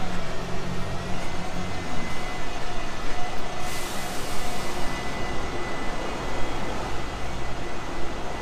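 Steady running noise of a moving vehicle, with a faint thin high whine over it.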